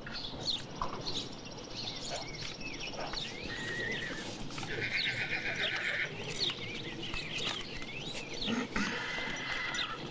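Outdoor birdsong: many short chirps and whistles, with buzzy trills about a second long recurring three times.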